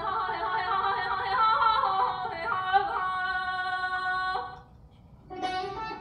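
A woman singing a long Persian classical avaz phrase in Abu Ata, her pitch wavering in quick ornaments, until the phrase ends about four and a half seconds in. Near the end a plucked string instrument comes in with a few struck notes.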